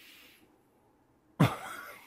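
Quiet room, then a single cough about a second and a half in.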